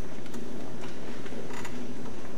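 Steady room noise in a meeting hall, with a few light clicks and knocks scattered through it.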